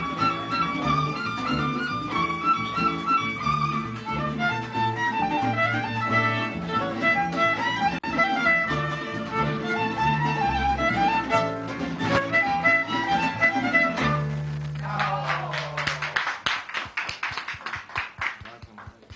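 A youth string ensemble playing, a violin carrying the melody over a moving bass line. The piece ends on a long held low note about fourteen seconds in, and clapping starts and fades away.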